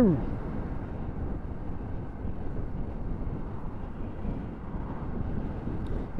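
KTM motorcycle riding along at steady speed: a steady rush of wind and road noise on the helmet microphone, with the engine underneath and no clear engine note.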